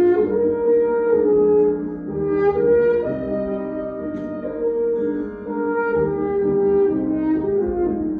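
French horn playing a melody of held notes over grand piano accompaniment.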